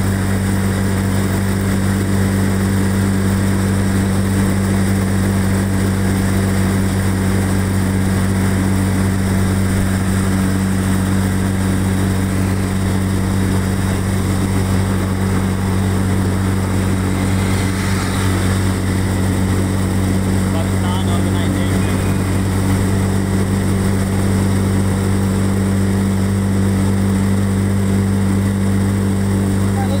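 A steady, low vehicle engine drone that holds one pitch, with no revving or change in level.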